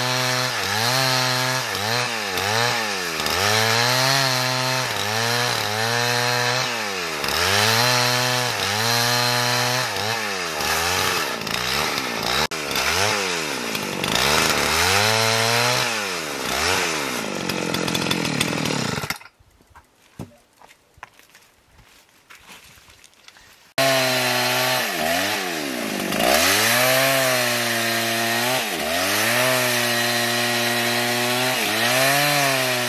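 Husqvarna chainsaw ripping lengthwise along a pine log, its engine note dipping under load and recovering over and over, about once or twice a second. About two-thirds through the sound cuts off abruptly to near silence for about four seconds, then the sawing comes back just as suddenly.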